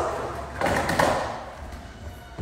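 Children scuffling and tumbling on a hard marble floor: scraping, with a couple of thuds about half a second and a second in, fading toward the end.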